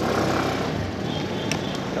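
Small motorcycle being ridden: a steady low engine hum under an even rush of road and wind noise.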